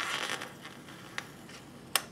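Fingernails picking at the edge of a planner sticker to lift it off the paper page, with light scratchy rustling, a small tick about a second in and a sharp click near the end.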